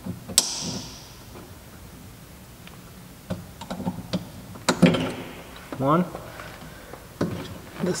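Scattered clicks and knocks of a stiff plastic cable clip being pried and worked loose inside a car's bare door shell. The loudest is a sharp snap a little past halfway.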